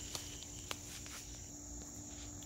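Insects chirring steadily in a high, even drone from the surrounding garden greenery, with two faint clicks in the first second.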